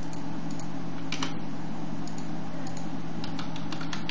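Computer keyboard keystrokes: scattered clicks, a short cluster about a second in and a quicker run of strokes near the end, over a steady low hum.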